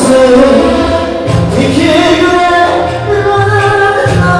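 Loud amplified live music: a singer's melody over a pulsing bass line.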